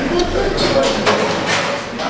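Indistinct voices and room noise, with a few short noisy swishes in the middle.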